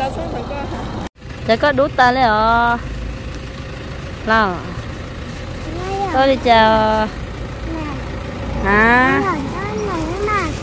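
High-pitched voices speaking in short phrases over a steady low rumble, with the sound cutting out completely for a moment about a second in.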